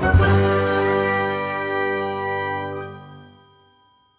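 Logo-reveal sting: a bright ringing chord struck just after the start, holding briefly and then fading away over about three seconds.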